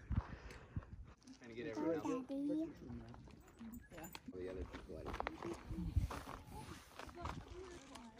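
Indistinct voices of people chatting, with wind rumbling and buffeting on the microphone.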